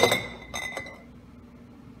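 Glass canning jar clinking as green beans are put into it: one sharp clink right at the start that rings on briefly, then a couple of lighter knocks about half a second later.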